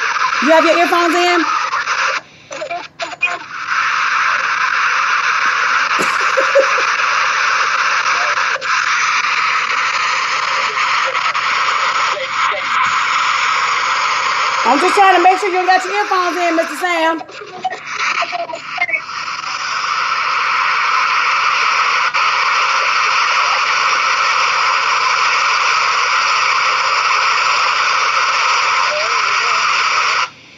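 Loud steady static hiss on a remote guest's call-in line, briefly cutting out twice, around two to three seconds in and again around seventeen seconds: a poor connection that keeps dropping, with faint garbled voice fragments breaking through.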